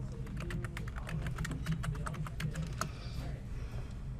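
Typing on a computer keyboard: a quick run of keystrokes that stops about three seconds in, as a search term is typed.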